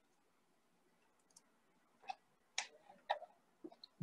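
Quiet room tone with four or five faint, scattered clicks in the second half.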